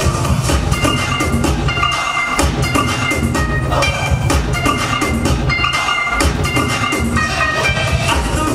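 Loud dance music with a heavy, steady drum beat and a bright, high melody.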